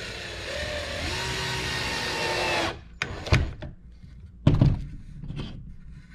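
Cordless drill running into a wooden board for about two and a half seconds, then stopping suddenly. It is followed by a few sharp knocks, the loudest near the middle.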